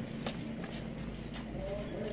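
Cats crunching dry kibble: scattered, irregular sharp clicks over a low background hum.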